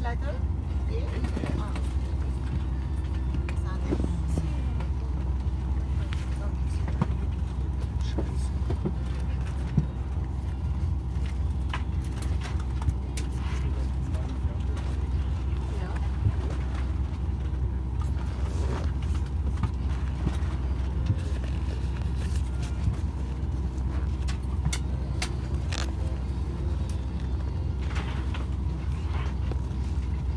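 Steady low drone of a parked airliner's cabin air system, with murmured passenger voices and occasional light clicks and knocks.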